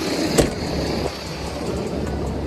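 Dump truck's diesel engine running steadily while the hydraulic hoist raises the dump bed. A sharp knock about half a second in and a fainter click near one second.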